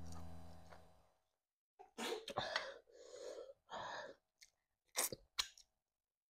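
Close-up mouth sounds of a person eating a soft starch swallow with pepper soup. A low hum fades out over the first second. Wet chewing noises follow, then a few short, sharp lip smacks near the end.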